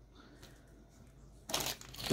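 Faint room tone, then about one and a half seconds in a short burst of rustling and clicking from hands handling plastic LEGO minifigure pieces and a plastic wrapper on a tabletop.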